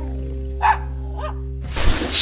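A small dog barks once about half a second in and gives a fainter yip a little later, over background music with a held chord. A short rush of noise near the end.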